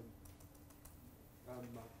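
Faint typing on a computer keyboard, a quick run of light key clicks in the first second. A distant voice says "uh" near the end.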